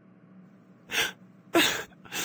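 A woman's crying sound effect: two short breathy sobs, about a second in and again half a second later, the second louder.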